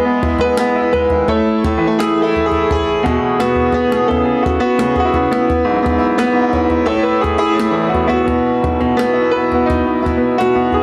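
Grand piano playing an instrumental passage of a worship song: a steady stream of quick notes over low notes pulsing underneath.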